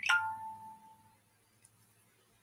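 A single bell-like chime struck once at the start, ringing on one main tone and fading out within about a second.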